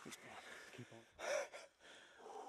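A man's loud, breathy gasp about a second in, short and close to the microphone, after a few faint spoken words.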